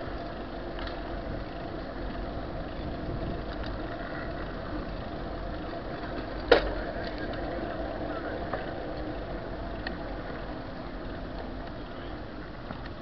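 Steady rolling and rattling noise of a bicycle ride picked up by a handlebar-mounted camera, with one sharp knock about six and a half seconds in.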